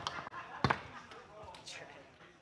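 Foosball in play: two sharp knocks of the hard ball against the men and the table. The louder one comes about two-thirds of a second in.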